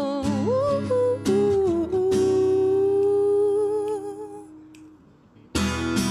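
A woman singing over an acoustic guitar, ending a phrase on one long held note with vibrato that fades almost away about five seconds in. Strummed acoustic guitar chords then come back in sharply near the end.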